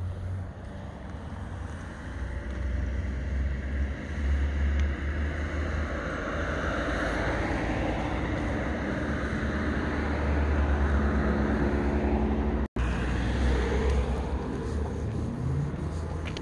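A car engine running at a rally car park, with a low rumble throughout, growing louder from about the middle. The audio cuts out for an instant about three quarters of the way through.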